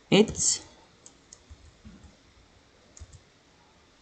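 Light, scattered computer keyboard key clicks, a handful of single taps spread over a couple of seconds as text is typed.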